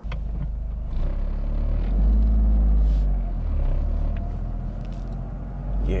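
Low rumble of a car driving up, the Toyota GR Corolla's turbocharged three-cylinder engine, swelling about two seconds in and then easing.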